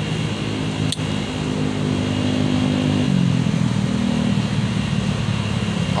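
A motor vehicle's engine running close by, a steady low hum whose pitch drops a little about halfway through. A single sharp click about a second in.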